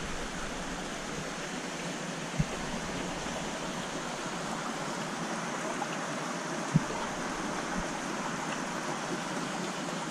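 Steady rushing of water circulating through a large aquarium's filtration and drains, with two faint soft knocks partway through.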